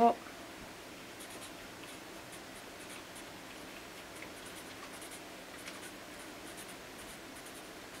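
Marker pen writing on paper: a run of faint, short scratchy strokes as block letters are written out.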